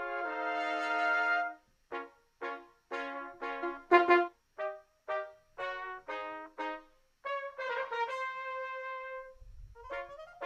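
Recorded cornet section of a brass band playing back from a multitrack mix: a held chord, then a run of short detached notes separated by brief silences, then another held note near the end.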